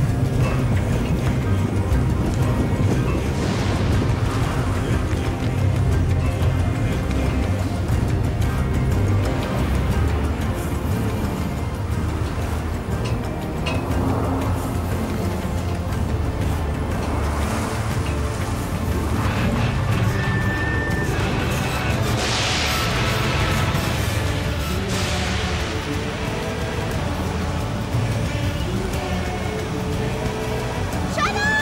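Dramatic background music over storm wind: a steady, heavy low rumble with noisy gusts sweeping through, strongest about three-quarters of the way in.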